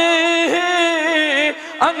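A man's voice preaching in a melodic, sing-song chant: one long held syllable for about a second and a half, then a short break and a quick rising syllable.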